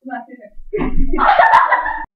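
Young women's voices calling out and laughing without words, loud in the second half, with a couple of sharp hand slaps about one and a half seconds in.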